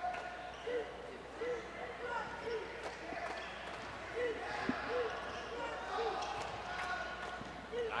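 A basketball being dribbled on a hardwood gym floor, a bounce about every three quarters of a second, with a break about three seconds in. Short squeaks from sneakers on the floor come now and then.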